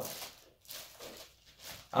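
Clear plastic bag rustling in a few short, soft crinkles as a keyboard is slid out of it.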